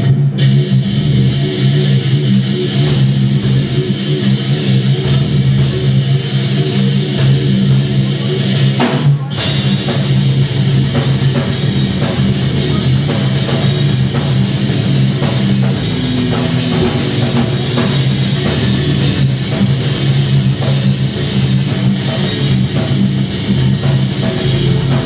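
Live heavy metal band playing loud, with electric guitars, bass and a drum kit; the band stops for a moment about nine seconds in, then goes on.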